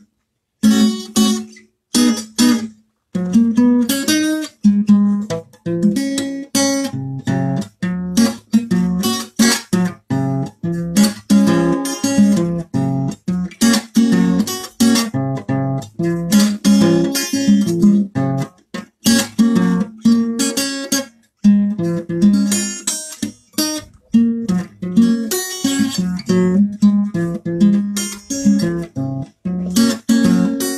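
Acoustic guitar strummed by hand, playing a steady rhythm of chords, with a brief break about two-thirds of the way through.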